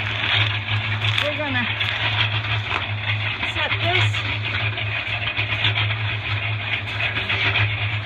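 An engine running steadily with a low, evenly pulsing hum, with a few faint clicks.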